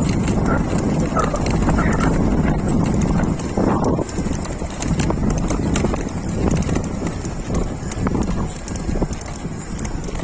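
Wind buffeting the phone microphone as an e-bike rides along a road, with a steady rumble and many short knocks and rattles throughout.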